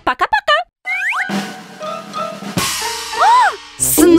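Cartoon sound effects over background music with drums: a quick string of short springy boing-like glides at the start, a couple of rising whistles about a second in, and an up-and-down swooping tone near the end.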